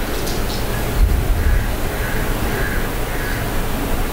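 Steady hiss and low rumble from an open handheld microphone, swelling briefly about a second in, with four faint short calls repeating a little over half a second apart in the background.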